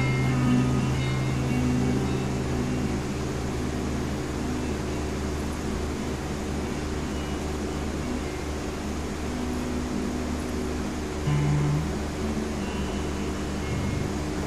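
Electric guitars' last chord ringing out and fading over the first couple of seconds, leaving a steady hum and hiss from the guitar amplifiers. About eleven seconds in, a short guitar note sounds.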